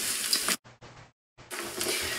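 Rice frying in a wok, sizzling as it is stirred with a wooden spoon. The sizzle cuts out almost completely for about a second midway, then comes back.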